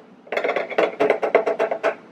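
A measuring spoon tapped rapidly against the mouth of a plastic gallon jug to knock cayenne pepper in: a quick run of light clicking taps, about eight a second.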